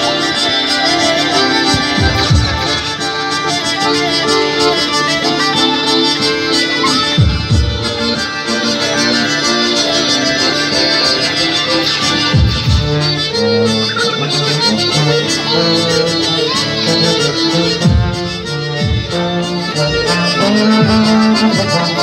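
Live street band playing a tune, with sustained held notes and a deep drum beat every few seconds.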